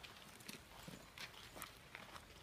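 Near silence with a few faint, irregularly spaced taps and clicks.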